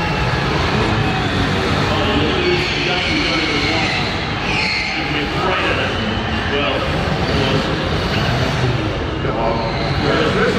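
Small cars' engines revving as they drive around an indoor arena floor, mixed with the noise of a large crowd, all echoing in the hall.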